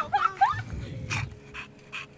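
A young grey pit bull-type dog on a leash giving a few short, rising whines and yips in the first half second, then a breathy pant about a second in.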